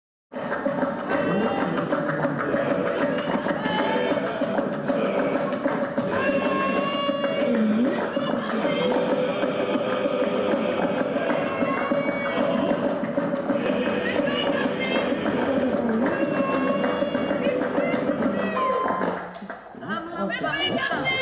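Contemporary music-theatre ensemble performing: a dense, steady layer of overlapping voices and instruments with one held tone underneath and short high phrases coming and going above it. It starts abruptly just after the beginning and thins out near the end.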